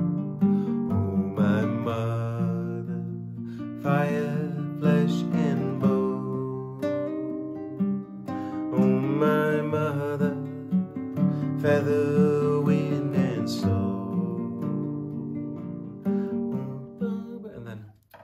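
Acoustic guitar strummed in a steady, flowing rhythm, with a man's voice singing softly along in places. The playing dies away just before the end.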